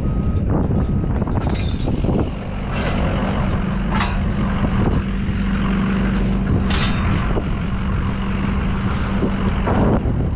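A vehicle's reversing beeper sounds a couple of times in the first second, then the engine runs with a steady low drone over rustling noise.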